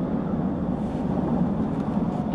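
Steady low hum inside a car's cabin: the taxi's running engine and the traffic outside, with no distinct events.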